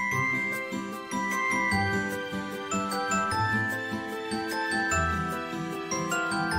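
Background music: a melody of held, bell-like tones over low bass notes.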